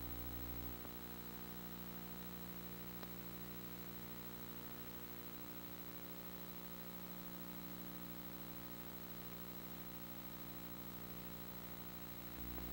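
Steady low electrical hum with faint hiss, the background noise of an old film soundtrack, with no other sound besides a tiny click about three seconds in.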